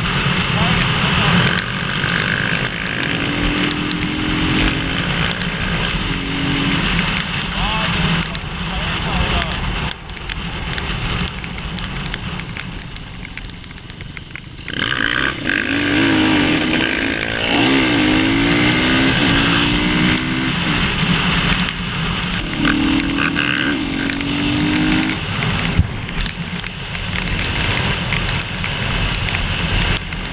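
Enduro motorcycle engines revving and running at speed, under heavy wind rush on the camera microphone. The engine note rises and falls in several spells. It drops back for a few seconds past the middle, then climbs sharply about halfway through.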